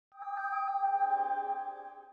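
A sustained electronic chord of several steady tones that fades in just after the start and dies away about two seconds later, used as a transition sting.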